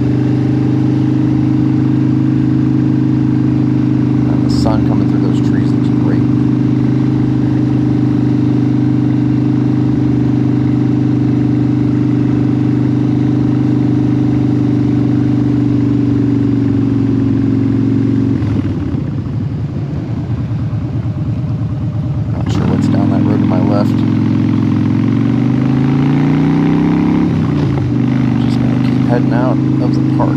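Cruiser motorcycle engine running at a steady cruise, heard from the rider's seat with wind noise. Around two-thirds of the way through, the throttle is rolled off and the engine note breaks up and drops for a few seconds. It then picks up again, rising in pitch as the bike accelerates, before settling back to a steady cruise.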